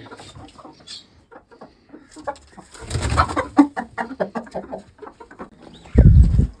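Pigeons cooing among other coop birds, quiet at first and getting busier about two seconds in.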